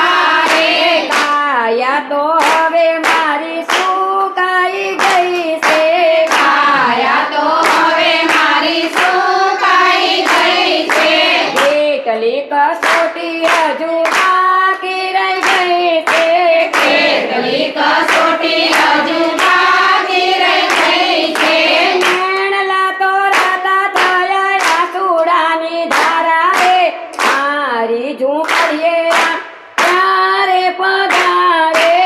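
A group of women singing a Gujarati devotional bhajan together, with steady rhythmic hand-clapping about twice a second. The singing and clapping drop out briefly just before the end.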